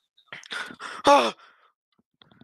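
A person's breathy sighs: a few short exhales, then a louder sigh about a second in, voiced and falling in pitch.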